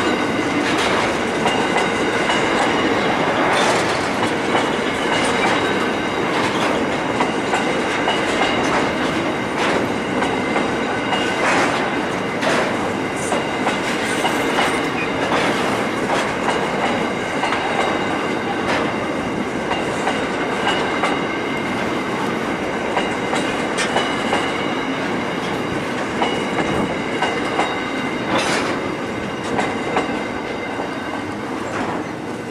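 Coal hopper wagons rolling past close by: steady wheel and rail noise with scattered clicks from the wheels over the rail joints and thin, steady high-pitched wheel squeal. It eases off a little near the end as the last wagon passes.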